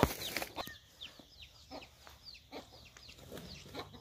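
Faint birds calling around the farmyard, many short falling chirps scattered throughout, with a single knock at the very start.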